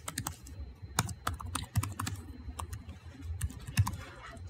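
Typing on a computer keyboard: an irregular run of sharp key clicks as an email address is entered into a login field.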